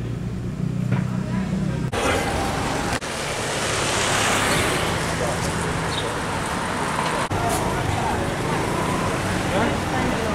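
Town street traffic noise with people talking indistinctly, and a steady low hum for the first two seconds. The sound changes abruptly a few times at edit cuts.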